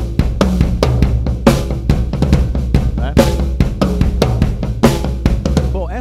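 Drum kit playing a tribal groove: a dense run of drum strokes over a steady low bass-drum boom, with a cymbal crash about every second and a half.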